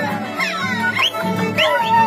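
Live Andean string band playing at close range: violin with sliding, swooping notes over strummed acoustic guitars.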